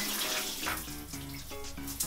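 Shower water running, a steady hiss, with soft background music playing over it.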